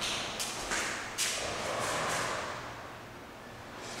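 Heavy sliding glass door being handled: a few knocks in the first second, then a rushing sound for about two seconds as it moves in its track, fading away.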